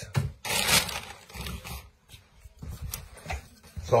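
Plastic bag of wooden offcuts rustling and crinkling as it is handled for about a second and a half, followed by a few light clicks and knocks of wood.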